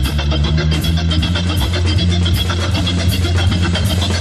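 Jazz organ trio playing live: a Hammond organ over a low, moving bass line, with drums and cymbals keeping a steady beat.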